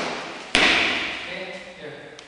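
A foot stamping onto a wooden parquet floor as a martial artist drops into a low stance: one sudden thud about half a second in, with a hiss that fades over about a second.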